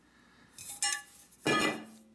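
Stainless steel pots clinking as they are handled, with a brief metallic ringing about a second in. A louder noisy scrape follows near the end.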